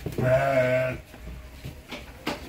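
A Garut sheep bleating once: a single low call lasting under a second.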